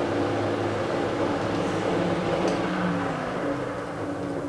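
Milling machine running, its spindle turning the INT30 tool adaptor: a steady motor and spindle hum that eases slightly near the end.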